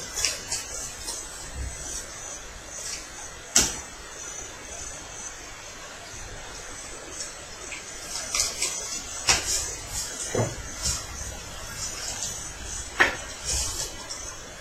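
Sleeved trading cards being handled, shuffled and set down on playmats: scattered short taps and clicks, one sharp one about three and a half seconds in and a run of them in the second half.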